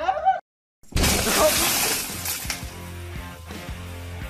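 A glass door panel shattering: a sudden loud crash about a second in that hisses and fades away over about a second and a half. Afterwards there is a low steady hum with a few faint clicks. A brief voice is heard at the very start.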